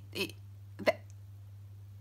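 A woman's short vocal sound, then about a second in a single sharp hiccup-like catch in her throat, over a steady low hum.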